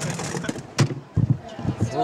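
Rugby wheelchairs colliding at the sideline with sharp metal knocks, the loudest just under a second in. Then come heavy thuds and rumbles of the commentary microphone being knocked and handled.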